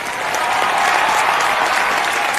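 Studio audience applauding, a dense, steady wash of clapping that builds up over the first moments.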